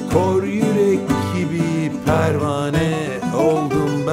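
Bouzouki and acoustic guitar playing together, the bouzouki picked and the guitar strummed.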